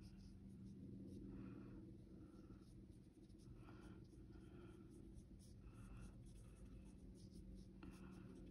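Faint soft strokes of a watercolor brush on damp paper, roughly one a second, over a low steady hum.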